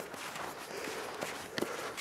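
Boot footsteps on snow-covered ice, with a sharper click near the end.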